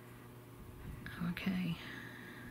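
Quiet room tone with a faint steady hum, then about a second in a soft, half-voiced whisper or murmur from a woman under her breath.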